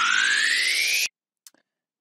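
Fast-forward sound effect marking a skip in time: a single tone with overtones sweeping steadily upward in pitch, cutting off suddenly about a second in, followed by a faint click.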